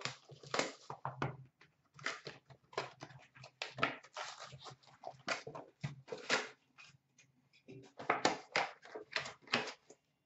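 Trading-card pack wrappers crinkling and tearing as hockey card packs are ripped open and the cards handled: a rapid run of short rustles and crackles that thins out for a moment about seven seconds in.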